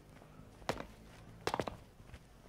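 Two slow, separate footsteps, each a short sharp step, about a second in and again near the end, over a faint steady low hum.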